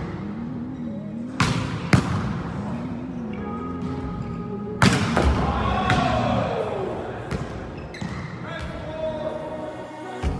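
Volleyballs being struck and bouncing in a large, echoing gym: a few sharp smacks, the loudest about one and a half, two and five seconds in. Voices and music run underneath.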